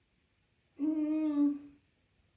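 A woman humming one steady, closed-mouth 'mmm' for about a second, a thinking hum of hesitation before she answers a question.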